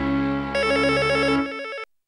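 Electronic jingle music: sustained synth chords, joined about half a second in by a fast warbling trill like a phone ringtone. It drops in level and cuts off into a brief silence just before the end.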